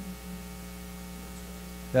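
Steady electrical mains hum, a constant buzz at one pitch with a ladder of higher overtones.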